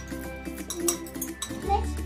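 A metal spoon clinking against glass bowls a few times as ingredients are scraped from a small glass bowl into a large glass mixing bowl. Light background music plays throughout.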